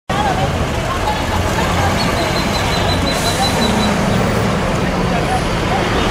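Steady road noise from pickup trucks and other traffic running slowly in a caravan, engines low under the noise, with people's voices faintly in the background.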